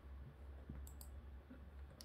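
Quiet room tone with two faint clicks close together about a second in: the click of advancing a lecture slide.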